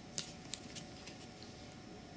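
Thin plastic PET drink bottle crackling under the fingers as it is turned in the hand: a few short, sharp crackles in the first second or so, then quiet.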